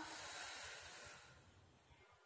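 A woman breathing out audibly in one long, soft, breathy hiss that fades away over about a second and a half: a cued exhale during a Pilates leg-switch exercise.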